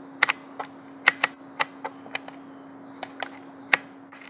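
Aperture ring of a Canon 50 mm lens turned through its hard click stops: about a dozen sharp, irregularly spaced clicks over a steady low hum.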